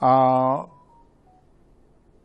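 A man's voice holding one long, steady-pitched hesitation sound, 'aaa', for about two-thirds of a second, then a pause of quiet room tone.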